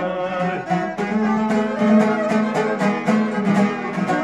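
Folk music from a strummed long-necked lute (šargija) and violins playing together, with the lute's strokes falling in a steady beat of about four a second.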